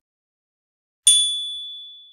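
A single bright ding from a notification-bell sound effect, struck about a second in and ringing on with a high, clear tone that fades away over about a second.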